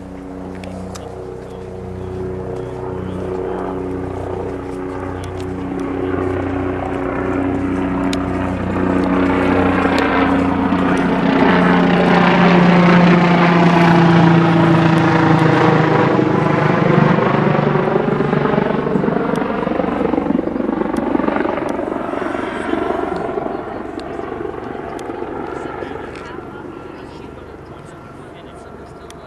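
A low-flying aircraft passing overhead: its engine drone grows louder, peaks about halfway through, then fades, and its pitch falls as it goes by.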